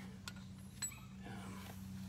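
Quiet low steady hum with two faint clicks, the second about a second in.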